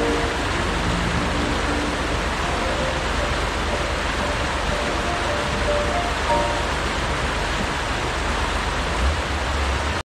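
Rushing creek water tumbling over rocks, a steady hiss, with a few soft held notes of instrumental music faintly over it.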